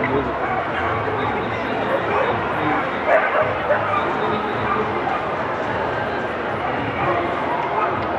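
Dogs barking and yipping over the steady chatter of a crowded hall, with a couple of louder yelps about three seconds in.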